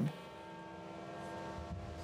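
Faint outdoor ambience: a steady low hum with a few steady tones over a soft background hiss, the low rumble swelling slightly near the end.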